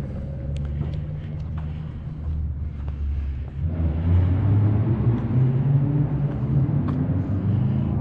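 A motor vehicle's engine running on the street, a low rumble that grows louder from about halfway through.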